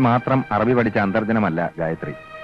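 A man speaking in Malayalam: film dialogue, with a short pause near the end.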